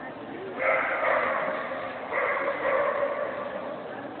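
A dog whining in two long, steady, high-pitched cries, one after the other, each lasting about a second and a half.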